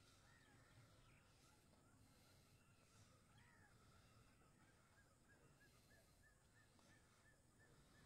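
Near silence with faint bird calls: a few scattered chirps, then a run of short, evenly repeated chirps at about four a second in the second half.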